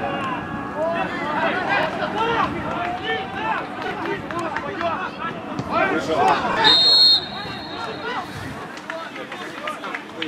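Footballers' voices shouting and calling to each other across the pitch. About seven seconds in, a referee's whistle blows once, a short shrill blast of about half a second, and it is the loudest sound.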